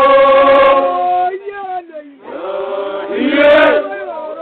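A group of voices singing a Samburu traditional song together, holding several notes at once. The singing drops back just after a second in, then a new phrase comes in and swells before falling away near the end.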